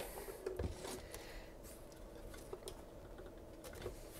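Faint handling noise from a small wooden radio cabinet being turned on a bench and its front knobs gripped: a few light, scattered clicks and knocks.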